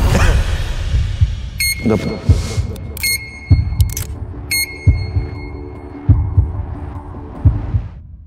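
Heartbeat sound effect: a low thump about every second and a quarter, with three short high electronic beeps about a second and a half apart in the first half.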